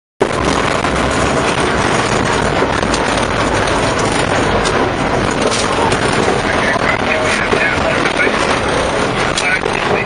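Steady noise inside the cabin of a Hagglund tracked all-terrain vehicle: the running vehicle's engine and running gear, with a few short knocks and rattles and passengers' chatter mixed in.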